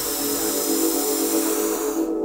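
A long, forceful breath hissing close to the microphone, starting and stopping abruptly, over a steady music drone.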